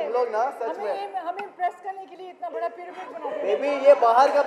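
Only speech: people talking over one another at a press gathering, with background chatter.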